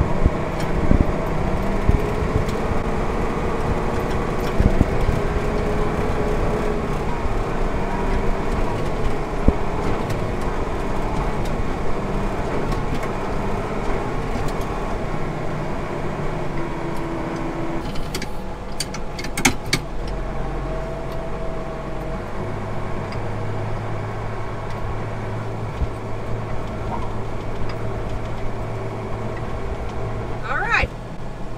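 Case IH Magnum 7140 tractor's six-cylinder diesel engine running steadily while driving, heard from inside the cab. A few sharp clicks or rattles come about two-thirds of the way through, and the engine note settles into a lower, steadier hum after that.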